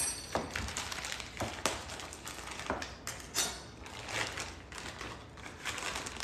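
Plastic packaging crinkling and rustling as it is handled, with scattered small clicks and taps at irregular intervals.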